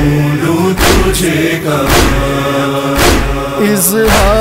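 Voices chanting a noha lament in long held notes. A sharp percussive beat lands about once a second beneath them.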